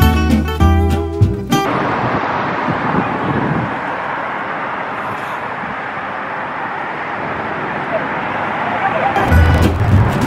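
Guitar background music for the first second and a half and again near the end; in between, a steady noisy hush of road traffic and wind.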